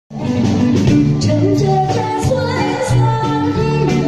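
A woman singing a Mandarin pop ballad into a handheld microphone over a live band of bass, keyboard and drums, all amplified through the PA. The music starts abruptly right at the beginning, with cymbal strikes every half second or so.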